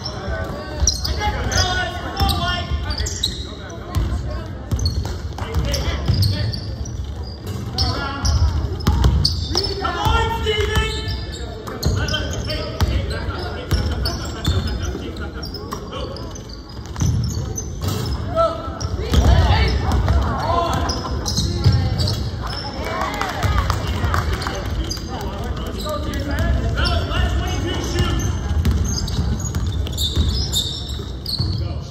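Basketball being dribbled and bounced on a gym's hardwood floor during a game, with players' voices calling out in the echoing hall.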